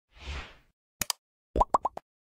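Animated like-button sound effects: a soft whoosh, then a double mouse click about a second in, then a quick run of three or four rising bubbly pops.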